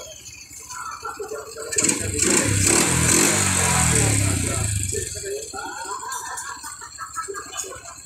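A motorcycle engine runs loudly for about three seconds, coming in suddenly about two seconds in with a hiss over it, then fading away.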